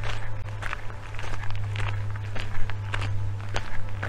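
Footsteps of a person walking along an outdoor park path, about two steps a second, each a short crunch. A steady low hum runs underneath.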